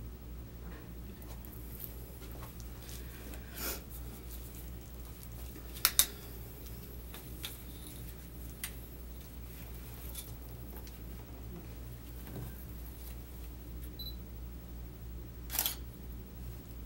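Camera shutter clicking a few times, the loudest a quick double click about six seconds in, over a steady low hum of a small room.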